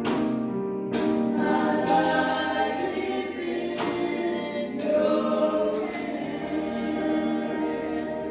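Two women singing a gospel song together, with notes held for a second or more.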